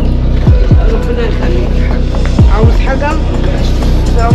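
Background music with a heavy beat: a pair of falling bass drops about every two seconds over a steady low bass line, with a melodic voice-like line near the middle.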